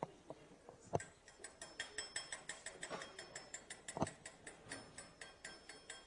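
Faint, rapid mechanical clicking, about seven even clicks a second with a light metallic ring, starting about a second and a half in. Two sharper knocks come at about one second and about four seconds in.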